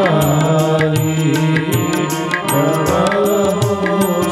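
Live devotional singing in a chant-like style, over a steady held drone, with cymbal strokes and drum beats keeping a regular pulse.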